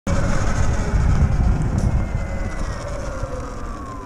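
Sur Ron LBX electric dirt bike's motor whining, the whine falling steadily in pitch as the bike slows, over a low rumble of wind and road noise.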